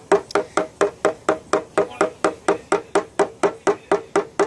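Light hammer taps on a knockdown punch held against the steel deck lid of a 2014 Subaru XV Crosstrek, about five taps a second, each with a short ring. The hollow ring, like the backside of a metal drum, marks where the metal is still under tension around the high spots being tapped down.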